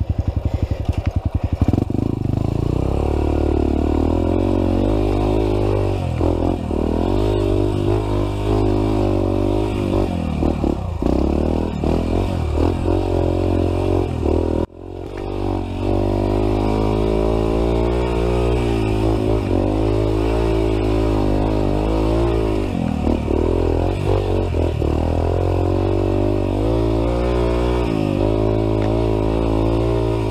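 Dirt bike engine running under load on a steep, rough trail climb, its pitch rising and falling with the throttle. The sound drops out sharply for a moment about halfway through.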